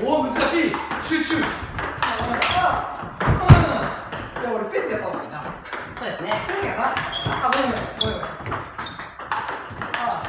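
Table tennis ball clicking off rubber-faced bats and bouncing on the table in a rally of drives and counter-drives, the hits coming irregularly. A loud low thump about three and a half seconds in.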